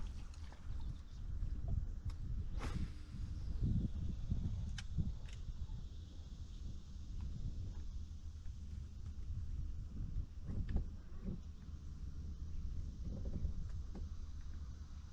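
Wind buffeting the microphone on open water, a steady low rumble that swells and eases. A few sharp clicks cut through it about three and five seconds in.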